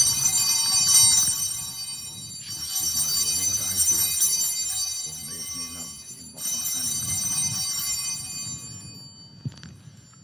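Small altar (sanctus) bells rung three times as the consecrated host is elevated, each ring a cluster of high bell tones that rings on for two to three seconds and fades.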